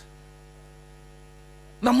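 Steady electrical hum, a low drone with a ladder of even overtones, in a pause between a man's words; his speech starts again near the end.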